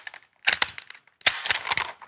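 Metal rope access descender being unclipped from the harness and handled, giving two quick clusters of clicks and clatter.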